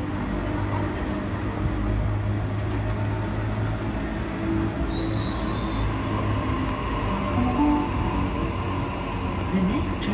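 Sydney Trains Waratah (A set) double-deck electric train moving off from the platform, its traction motors giving a steady hum with several held tones. Near the end, tones glide in pitch.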